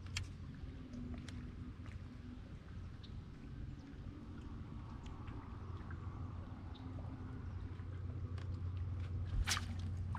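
Quiet open water around a bass boat: a low steady hum and faint scattered clicks of the rod and reel as a bait is worked. About half a second before the end, a sudden burst of noise as the rod sweeps into a hook set on a bass.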